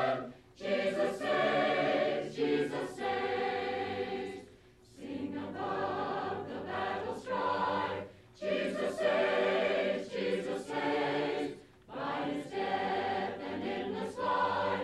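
A choir singing without instruments, in four phrases of about three and a half seconds each with short breaks between them.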